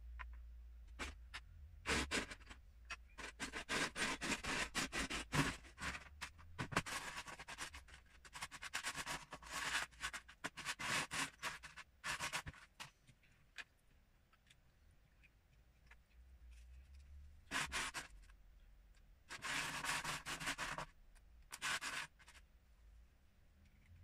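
Loose Lego pieces clattering and scraping as a hand rummages through a plastic storage tub, in dense bursts of clicks and rustling with quieter gaps between them.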